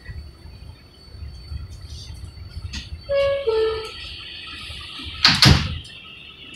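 Subway car doors closing: the two-note falling door chime sounds, then about two seconds later the doors slide shut with a loud bang, over the steady low hum of the stopped train.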